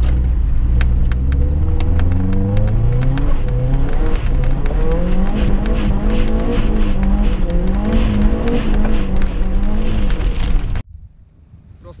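Subaru Forester's turbocharged flat-four engine revving hard under acceleration, heard from inside the cabin: the note climbs steadily for about five seconds, then is held high, rising and falling with the throttle, with scattered sharp ticks over it. It cuts off suddenly about a second before the end.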